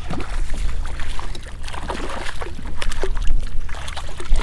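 A hooked speckled trout splashing and thrashing at the water's surface as it is reeled to a kayak and scooped into a landing net, a string of short splashes. A steady low wind rumble sits on the microphone throughout.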